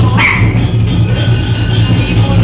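Lion dance percussion: a big drum and clashing cymbals playing a fast, steady beat. A short, rising, high-pitched cry cuts through about a quarter second in.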